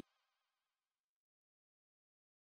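Near silence: the sound cuts off abruptly, leaving only a very faint fading tail for about the first second, then nothing.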